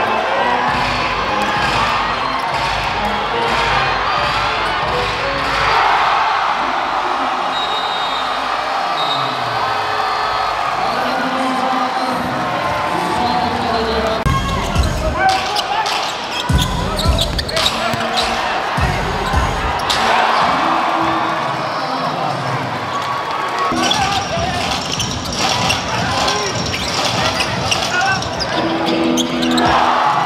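Live basketball game sound in an indoor arena: steady crowd noise, with the ball bouncing on the hardwood court and a run of sharp knocks in the middle stretch.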